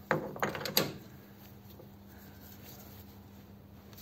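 A few sharp metal clicks and knocks in the first second as a steel tool holder with a threading insert is handled and seated on a lathe's quick-change toolpost, then quiet.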